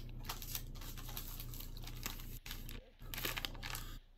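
Plastic packaging crinkling and rustling in the hands as a wrapper is torn open and handled, with a couple of brief pauses about two and a half seconds in.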